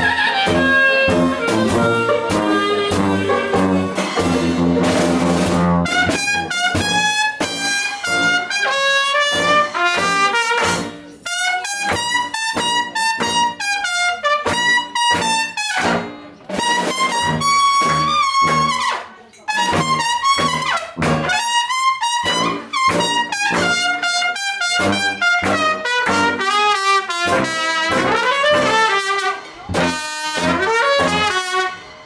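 Dixieland jazz band playing live: the full ensemble with held low brass notes for about six seconds, then a Yamaha Xeno trumpet carrying a solo melody line over the band's rhythm section.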